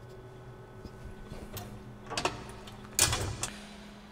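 The coolant line on a Tormach 440 CNC mill being repositioned by hand: faint clicks and scrapes, then a louder rustling scrape about three seconds in, over a steady low hum.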